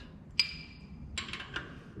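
A sharp metallic clink with a short high ring, then a cluster of lighter metallic clinks about a second later, as metal parts or tools are handled at a trailer wheel hub.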